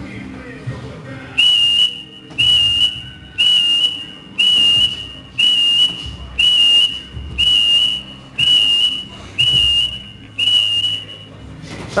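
Electronic boxing round timer beeping ten times, one high steady beep about every second: the countdown to the end of a sparring round.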